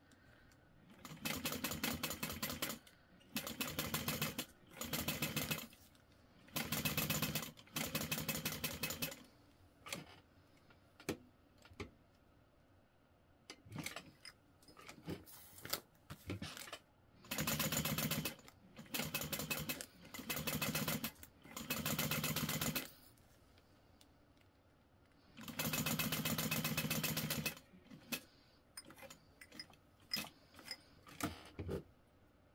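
Juki industrial sewing machine stitching through layered vinyl in short runs of a second or two, about nine in all. Quiet pauses with light clicks come between the runs as the work is repositioned, the longest near the middle.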